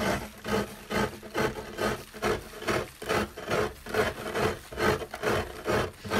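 A steady rhythmic rasping, about two and a half scraped strokes a second, keeping an even beat.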